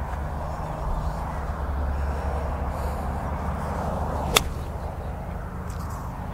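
A single sharp click of an iron striking a golf ball, about four seconds in, against a steady background rumble and hiss.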